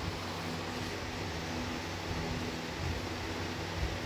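Steady background hum and hiss of an empty stadium's ambient sound, with no crowd noise.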